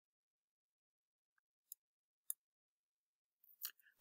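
Near silence, broken by two faint, very short clicks in the middle and a faint blip near the end.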